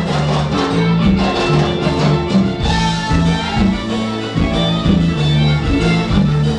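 Live Tejano band music playing steadily, with an electric bass line and drums under the band.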